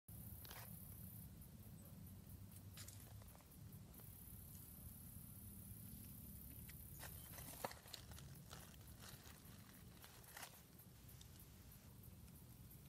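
Near silence: faint low rumble of outdoor air and handling, with a few soft scattered clicks, one a little sharper about seven and a half seconds in.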